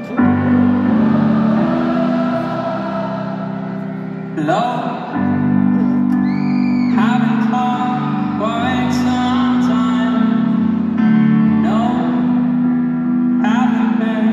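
Live amplified concert music: held low keyboard chords that change twice, with a singing voice sliding up into sustained notes several times.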